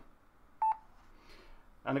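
Yaesu FT-817 transceiver key beep: one short, high beep as the function button is pressed and held to leave the menu.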